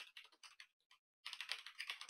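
Faint typing on a computer keyboard: a few scattered keystrokes, a short gap, then a quick run of keystrokes from a little past a second in.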